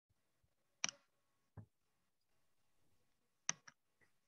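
A few faint computer mouse clicks over near silence: one about a second in and a quick pair near the end, with a duller low knock in between.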